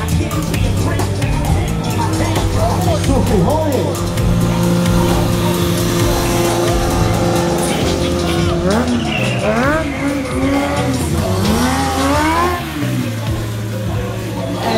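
Kawasaki 636 sport bike's inline-four engine under stunt riding: held at steady revs for a few seconds, then revved up and down again and again in the second half.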